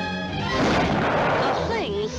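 A cartoon shotgun blast about half a second in: a sudden loud burst that dies away over about a second, over the orchestral cartoon score.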